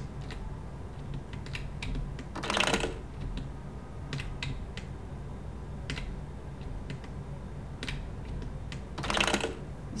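Scattered clicks of computer keys being pressed, a few at a time, over a low steady hum. Two short bursts of hiss, about two and a half seconds in and again near the end, are louder than the clicks.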